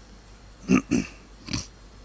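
Three short, sharp vocal bursts in quick succession, about a second in; the first is the loudest and the third the weakest.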